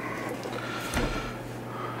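Quiet room tone with a steady low hum and one faint soft handling knock about a second in.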